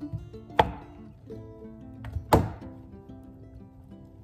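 Chef's knife cutting through pineapple and striking a glass cutting board: two sharp knocks about a second and a half apart. Background music with sustained notes plays throughout.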